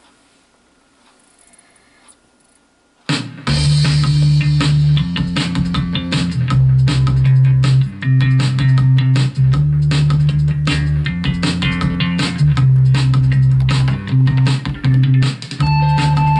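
Sony CDP-C315 five-disc CD changer in shuffle mode: a few seconds of faint sound while it seeks the randomly chosen track, then a song with guitar, bass and drums starts playing back loudly about three seconds in.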